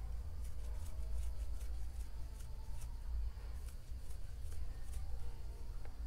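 Faint, scattered soft clicks and rustling of a metal crochet hook pulling 4-ply acrylic yarn through chain stitches, over a steady low room rumble.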